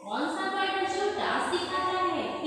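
A woman's voice talking.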